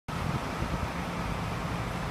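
City street traffic: a steady low hum of vehicle engines and road noise.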